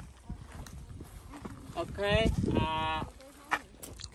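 One drawn-out vocal call, a little over a second long, about two seconds in: it wavers in pitch at first, then holds steady.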